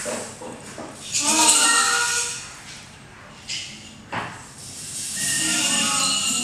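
Group performance of an improvised graphic-score piece: swells of hissing noise mixed with wavering pitched vocal or instrumental tones, one rising about a second in and another building near the end, with a couple of short clicks between them.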